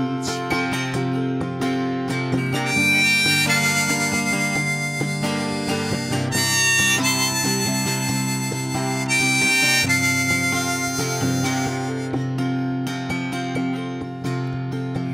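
Harmonica played from a neck holder, an instrumental solo of long held, bending notes over acoustic guitar accompaniment.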